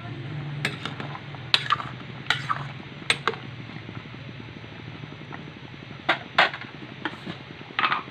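A metal utensil knocking and scraping against a metal cooking pot as kangkong greens are stirred and pushed down into the simmering broth. Sharp clinks come in a quick run over the first few seconds, stop for a moment, then come again near the end.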